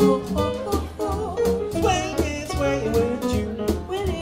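Live small-group swing jazz: a double bass walking line, piano and a steady swing beat on the drums, with a woman's voice singing a wordless scat line over them.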